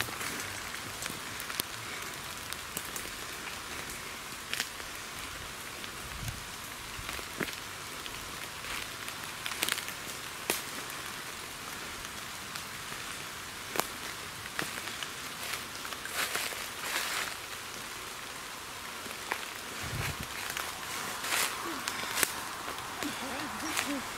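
Footsteps crunching and crackling through dry leaf litter and twigs, at an irregular pace, over a steady hiss.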